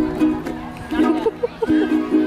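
A small ukulele strummed by a child, with voices alongside.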